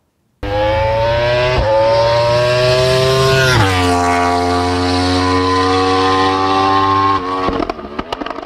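A vehicle engine running under load: its pitch rises slowly, drops sharply about three and a half seconds in like a gear change, then holds steady and cuts off suddenly near the end.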